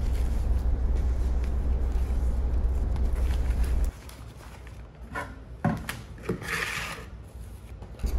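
Large noni leaves being handled on a tabletop: a few soft knocks and a brief papery rustle as the stack is lifted. A low steady hum runs under the first half and stops abruptly about four seconds in.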